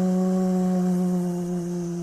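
A man's voice held on one long, steady 'mmm' hum at an unchanging pitch: a stuttering block, the speaker stuck on that sound in mid-sentence.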